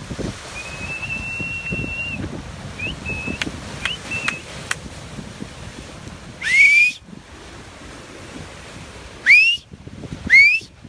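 A man whistling: one long held note, a few short notes, then three loud rising whistles blown with his fingers at his mouth. Wind and surf run low underneath.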